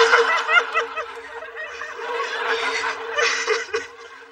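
Studio audience laughing at a sitcom punchline. The laughter is loud at first, dies down over the first second, and thins into scattered chuckles and short bursts.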